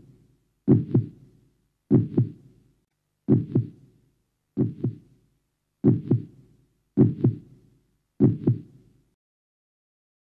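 Heartbeat sound effect: a slow, steady run of double thumps, one pair about every 1.2 seconds, stopping about nine seconds in.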